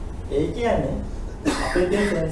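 A presenter's voice speaking, with a short cough about one and a half seconds in.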